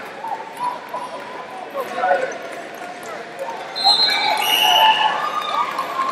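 Background chatter of many voices echoing in a large sports hall, with a raised voice calling out about four seconds in.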